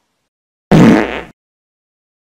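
A comedy fart sound effect: one loud, rough burst lasting a little over half a second, starting about 0.7 seconds in.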